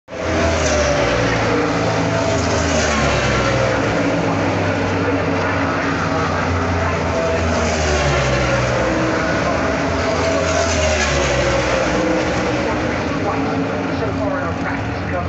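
NASCAR Cup Series race cars' V8 engines running laps in practice. They make a steady, dense drone whose pitch slowly rises and falls as the cars move around the track.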